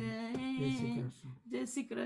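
Unaccompanied voice singing a slow devotional song, holding one long note for about a second, then a few shorter phrases as the song draws to its close.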